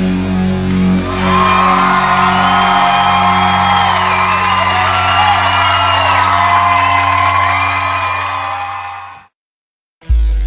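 A rock band's final chord ringing out on distorted electric guitars and bass, with whoops and cheering over it. The sound fades and cuts off about nine seconds in.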